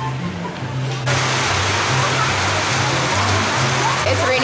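Background music with a repeating bass line. About a second in, the steady hiss of heavy rain falling on pavement comes in under the music and goes on.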